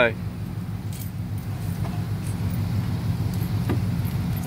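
Car rolling slowly over a dirt lot, heard from inside the cabin: a steady low engine and road rumble, with a few faint light clinks.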